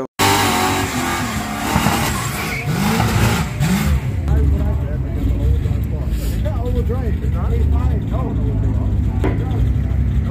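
Oldsmobile Cutlass drag car's engine revving up and down over a loud hiss of spinning tyres for the first four seconds, then running with a deep low rumble as the car creeps forward toward the line.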